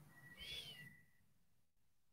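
Near silence: room tone, with one faint, brief whistle-like tone about half a second in that rises and falls.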